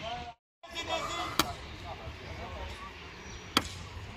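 Two sharp impacts, about two seconds apart, over faint voices, after a brief dropout of the sound near the start.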